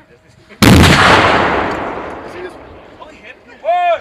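An M777 155 mm towed howitzer fires about half a second in: one sudden blast whose rumbling echo dies away over the next two to three seconds.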